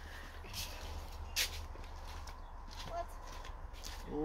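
Soft footsteps and the rustle of leafy garden plants being pushed through, as a few short scuffs over a low, steady rumble.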